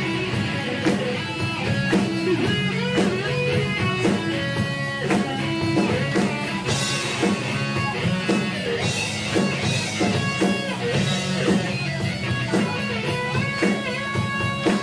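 Live rock band playing an instrumental passage: electric guitars over a drum kit, with keyboard.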